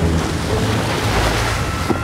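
Rushing water and spray along the hull of a Volvo Ocean 65 racing yacht as its bow cuts through the waves under sail, with steady wind buffeting the microphone.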